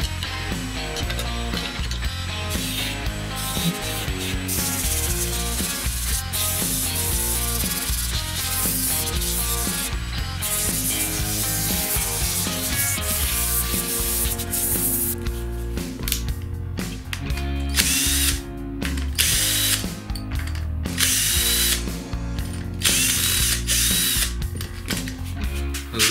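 Electric wood lathe spinning a birch workpiece while it is finish-turned and then sanded with sandpaper held against it, over background rock music. The second half comes in separate bursts with short gaps.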